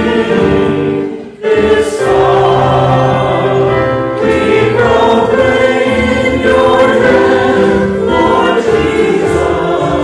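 Voices singing together in sacred church music during Mass, held notes moving from chord to chord, with a short break between phrases about one and a half seconds in.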